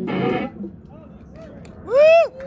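A two-piece rock band of electric guitar and drum kit hits a final chord and drum hit that cuts off about half a second in, ending the song. Near the end comes a loud whoop from a person, its pitch rising and then falling.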